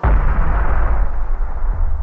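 A 7.62 mm rifle cartridge bursting outside a barrel: a sudden deep boom that carries on as a long low rumble, fading slowly over a few seconds.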